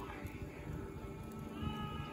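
Wood fire burning in a fireplace, faint, with scattered small crackles and pops. A faint held pitched sound comes in near the end.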